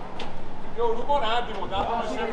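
People talking nearby, the voices starting about a second in, with a short click just before.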